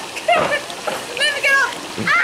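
Women laughing and squealing in high voices over splashing pool water as a swimmer climbs out up the ladder.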